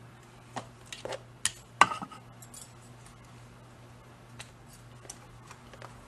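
Several small clicks and clinks of metal tools being handled on a jeweller's bench, the loudest about two seconds in, then a few faint ticks.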